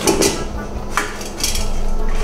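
Silicone bench scraper pushing a boiled potato through the fine mesh of a metal tamis (drum sieve), in about three short scraping strokes.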